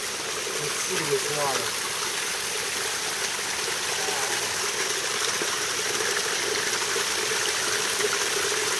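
Spring water running steadily down a rock face, an even, continuous splashing rush.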